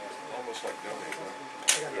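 Faint voices under a thin steady tone, with a short sharp hiss near the end.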